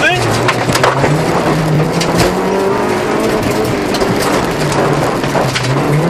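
Honda Civic 1.5-litre engine heard from inside the cabin under rally driving: revs climb over the first two seconds, hold, ease off and pick up again near the end. Scattered sharp clicks sound over the engine.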